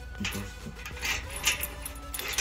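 Keys on a metal key ring jangling, with a few light metallic clicks, the sharpest about a second and a half in.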